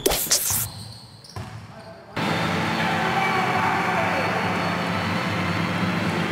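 A short whoosh-and-hit sound effect from the animated intro graphic, then from about two seconds in the steady crowd noise of an indoor basketball arena, with voices blended in.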